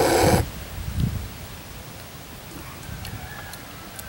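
A man slurping a sip of the foamy head off a mug of stout: one short, loud slurp right at the start, followed by a soft low swallow about a second in.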